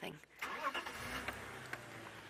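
Safari game-drive vehicle's engine starting about half a second in, then running steadily as the vehicle gets ready to reposition.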